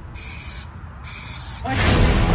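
Aerosol spray-paint can hissing in two short bursts. A louder, fuller sound comes in just before the end.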